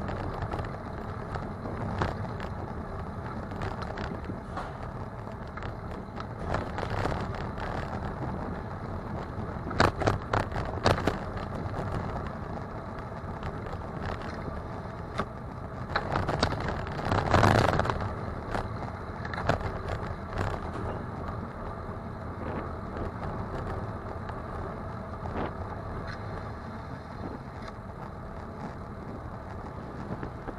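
Bicycle riding on a city street: steady road and tyre noise, with sharp knocks and rattles as the bike goes over bumps, a cluster of them about ten seconds in. About seventeen seconds in there is a louder rush of noise lasting a second or two.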